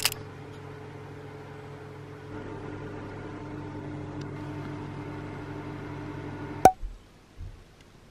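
A kitchen appliance hums steadily and gets a little louder about two seconds in. The hum stops with a sharp click near the end.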